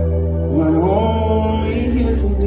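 Live worship music: sustained keyboard chords underneath, with a male voice coming in about half a second in and singing a long held note that slides up in pitch.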